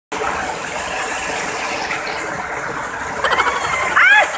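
Water of a small rocky waterfall rushing steadily, with a person's voice crying out near the end.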